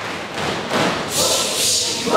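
A crowd of students cheering and shouting together, with no clear words. It rises to a loud, high-pitched cheer in the second half.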